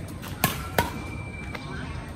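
Badminton rackets striking a shuttlecock in a fast exchange: two sharp cracks about a third of a second apart, about half a second in.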